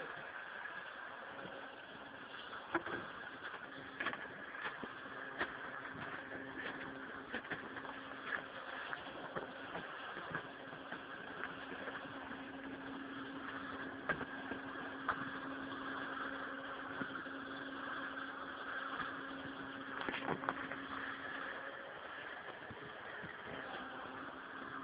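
Steady drone of a running engine, with a low even hum that fades out near the end and a few faint clicks over it.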